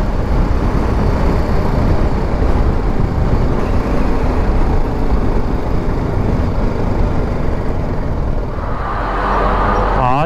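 A BMW G 310 GS motorcycle riding through city traffic: its engine running under a steady rush of wind on the microphone.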